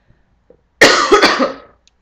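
A woman coughs once, loudly and harshly, just under a second in, the cough dying away within about a second.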